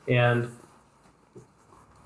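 A man's voice saying a single word, then a pause of near-silent room tone broken by one faint, brief tick.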